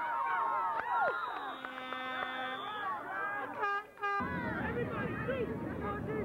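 Spectators shouting and cheering, then a steady horn blast of about a second and a half, and a shorter tone just before four seconds in. After that a noisier background of crowd chatter.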